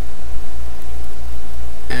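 A steady low hum with a faint hiss over it, the background of the recording in a pause between words.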